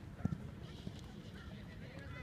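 A football being kicked: a sharp double thud about a quarter second in, then a lighter knock just before the second mark, over distant players' shouts and steady outdoor noise.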